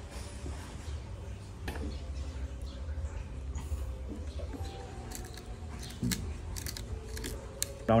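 Quiet hand-work sounds as a steel blade is set into a slot in a wooden block and a steel C-clamp is tightened on it: light metallic clicks and scrapes, more frequent in the second half, over a low steady hum.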